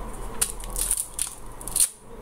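Crinkling and rustling of small objects being handled, an irregular run of little crackles.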